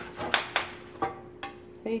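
Metal spoon scraping baked-on grease off a stove drip pan in about four short, separate strokes, with a faint steady tone underneath.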